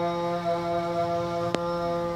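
A man's voice calling the adhan, holding one long, steady melismatic note. There is a short click about one and a half seconds in.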